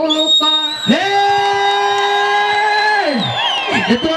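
A voice through a stage PA holds one long sung note. It rises into the note about a second in and lets it fall away after about two seconds. A thin high steady tone sounds over it, and falling vocal glides follow near the end.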